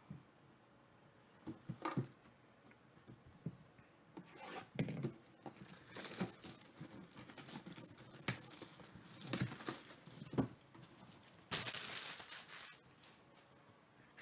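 Faint handling of a cardboard box as it is turned over and opened: scattered taps, clicks and rustles, with a second-long ripping noise near the end.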